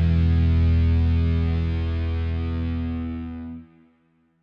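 Electric bass guitar played through an overdrive pedal: a held, distorted note rings out and slowly fades. It is cut off sharply about three and a half seconds in.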